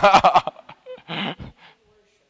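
A man's short laugh, about a second in, just after his speech stops.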